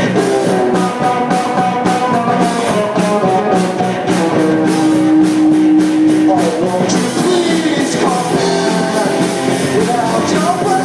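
Live rock band playing: electric guitars over bass and a drum kit keeping a steady beat.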